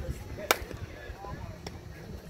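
A softball bat hitting a pitched softball: one sharp crack about half a second in, then a fainter click about a second later.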